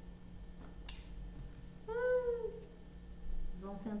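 A single short call about two seconds in, rising then falling in pitch, with a light click about a second in.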